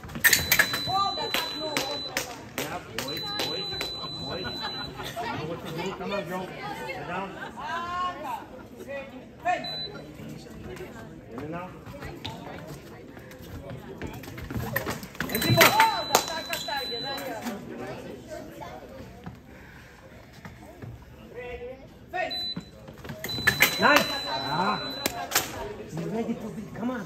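Fencing bout: sharp clacks of blades and footwork on the metal piste, with an electronic scoring machine giving a steady high beep lasting a second or two, heard about five times as touches register, the first just after the start and two close together near the end. Voices of spectators and coaches run underneath.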